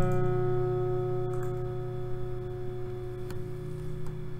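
An acoustic guitar chord left to ring after a strum, slowly dying away, with a faint click near the middle.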